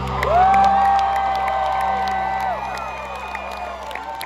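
Concert crowd cheering and whooping as a rock song ends, with one long high scream held about two seconds and scattered clapping. The band's last sustained note rings underneath and fades toward the end.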